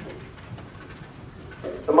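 Dry-erase marker writing on a whiteboard, a few faint strokes in the first part. A man's voice starts up near the end.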